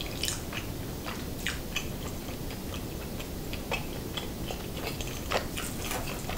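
Close-miked chewing of a soft, saucy chili cheese rice casserole: irregular wet mouth clicks and smacks, several a second, over a steady low background hiss.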